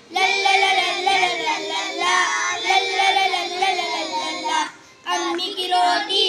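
A group of young boys singing a children's action rhyme together, breaking off briefly just before the end and starting again.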